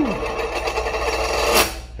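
A large silver coin spinning and rolling on a hard tabletop, a fast steady rattle that ends in a sharp clatter as it drops flat about one and a half seconds in.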